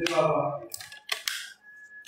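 A young woman's voice trails off in the first moment. A few short, sharp clicks follow, then a faint, brief steady high tone near the end.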